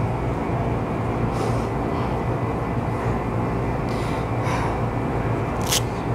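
Steady low hum with a noisy rumble, with a few faint short hisses and one sharp click near the end.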